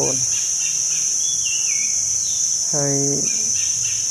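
A steady, high-pitched drone of insects, with a bird chirping several times and giving a short falling call in the first half.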